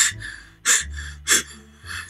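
A woman's sharp gasping breaths, three in quick succession, as she re-enacts sobbing.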